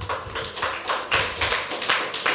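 A small audience clapping: a burst of scattered, irregular hand claps in response to a speech.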